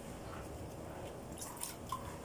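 Faint dripping water, with a few light drips near the end.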